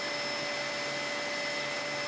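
Steady background hiss with faint, thin steady whining tones in it and no change in level; no page rustles stand out.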